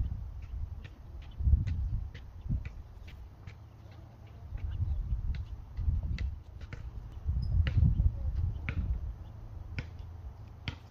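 Wind buffeting the microphone in uneven gusts, with scattered light, sharp clicks throughout.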